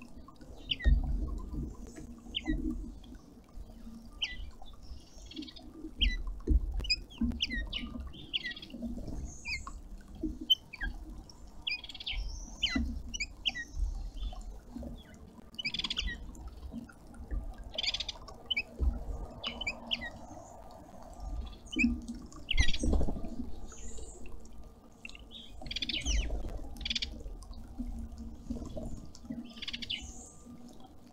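Several small birds chirping at a garden feeder, short high chirps coming every second or so, mixed with irregular low thumps from birds moving about on the wooden feeder.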